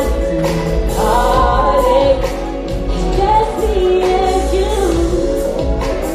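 Live pop/R&B concert music: a female lead singer's voice carrying a melody over a band's bass and drum beat.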